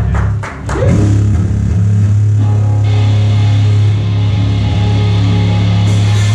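Amplified rock band instruments warming up: a few sharp hits near the start, then from about a second in a low electric guitar or bass note held steady through the amps for several seconds.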